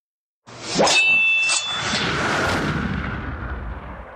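A produced sound effect: a quick rising whoosh into a metallic clang with a ringing ding about a second in, a second hit just after, then a long noisy tail that slowly fades out.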